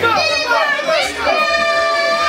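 A young boy's high voice through a microphone, performing in a sing-song delivery with long held notes in the second half.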